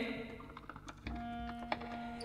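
Quiet gap between sung phrases: the last phrase dies away, then a few faint sharp clicks and a soft held low note from about a second in.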